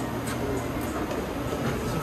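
Steady rumble and hiss of commercial kitchen machinery, with a few faint clicks.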